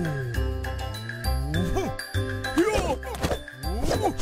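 Cartoon soundtrack: music with jingling, chiming tones and several swooping sound effects that slide down and back up in pitch, more of them crowding in during the second half.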